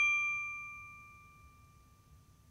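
A single bright, bell-like ding from an animated logo sting, struck just before and ringing out, fading away steadily.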